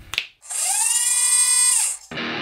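An edited transition sound effect: a quick swish, then a loud buzzing whine, drill-like, that rises in pitch, holds steady for about a second and a half and drops away at the end.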